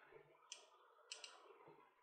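Near silence with two faint clicks, about half a second and just over a second in: fingertip taps on an interactive touchscreen display as bonds are added in a molecule-building simulation.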